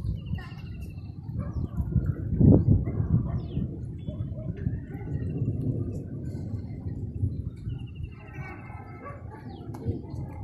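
Outdoor village-lane ambience: a steady low rumble, with a thump about two and a half seconds in. Short high bird chirps sound near the start and again near the end.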